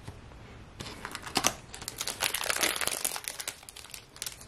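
Foil wrapper of a hockey card pack crinkling as it is torn open and handled, a dense run of crackles starting about a second in.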